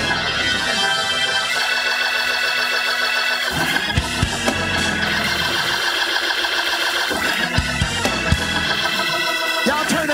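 Church organ playing held, swelling chords, with a few short low thumps.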